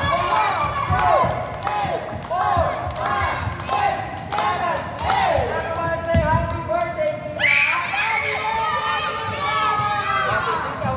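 A group of children shouting and cheering, their voices rising and falling over one another and louder from about three-quarters of the way in, with hand claps and thuds of feet on a padded floor.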